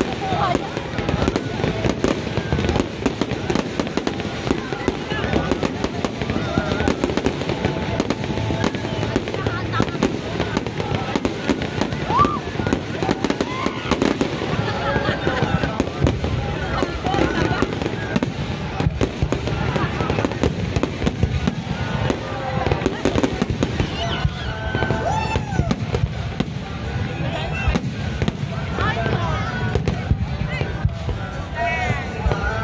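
Aerial fireworks going off in a rapid, unbroken run of bangs, with people's voices over them. The bursts thin out over the last few seconds.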